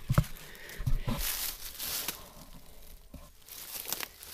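Rustling and crinkling of a poncho-tarp's fabric and dry oak leaves as the shelter is handled and stepped around, with a couple of sharp clicks at the very start. The scratchy noise is loudest for the first two seconds, then fades to a faint rustle.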